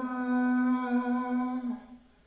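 A solo voice, unaccompanied, holding one long steady note for nearly two seconds before stopping.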